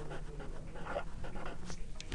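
Black felt-tip marker writing on paper: a quiet series of short scratchy strokes as a word is written out.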